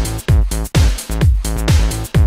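Electro dance music from a DJ mix: a steady, punchy kick drum about twice a second under sustained synth chords.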